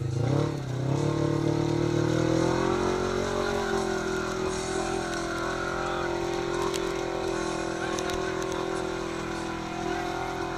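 Polaris RZR XP 1000's parallel-twin engine revving under load as the side-by-side churns through a deep mud hole. The revs dip and recover in the first second, then climb about three seconds in and hold high and steady.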